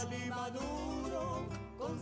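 Quiet background music with guitar.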